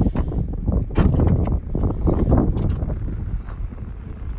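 The rear liftgate of a 2019 Chevy Equinox being unlatched and raised: a few short clicks and knocks over a steady low rumble.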